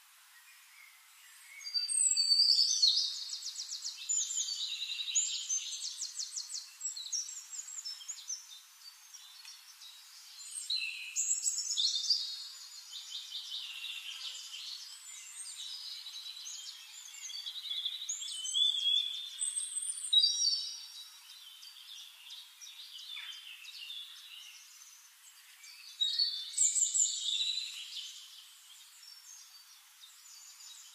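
Small birds singing: repeated bursts of rapid high trills and chirps a few seconds long, over a faint hiss.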